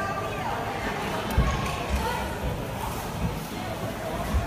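Indistinct voices over a steady background noise, with a few dull low thumps, the loudest about a second and a half in.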